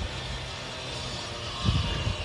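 A steady low hum over even background noise.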